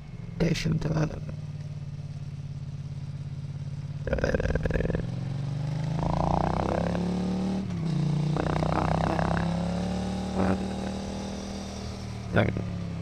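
Motorcycle engine recording mangled by AI speech enhancement: the engine's steady hum comes through with warbling, voice-like babble laid over it in short bursts. The engine pitch climbs over a few seconds in the middle as the bike accelerates, dips briefly, then eases off near the end.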